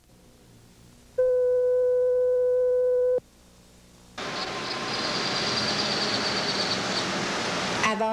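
A steady electronic test tone held for about two seconds and cut off sharply: the line-up tone at the start of an old TV news tape. About a second later a loud even hiss of tape static starts, with a faint high whistle in it.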